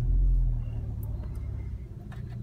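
VW Mk6 Golf R's turbocharged 2.0-litre four-cylinder engine just after firing up, heard from inside the cabin. It is loudest in the first half second, then settles into a steady idle at about 900 rpm.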